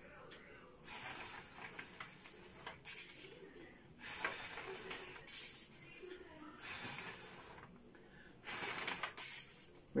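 A person blowing several long breathy puffs of air at a paper pinwheel to make it spin, each a second or so long with short gaps between.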